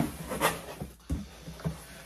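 Corrugated cardboard shipping box being opened by hand: flaps pulled back and rubbed, with several sharp knocks and rustles of cardboard spread through the moment.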